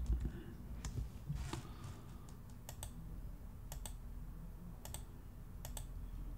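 Faint clicks from computer keyboard or mouse controls while zooming in on an image: two single clicks, then four quick double clicks about a second apart.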